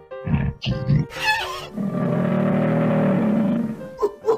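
Zoo animal sound effects over background music: a few short calls, a high gliding cry about a second in, then one long low call.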